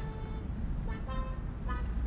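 Low, steady road rumble inside a moving car, with short, soft pitched notes sounding about every half second.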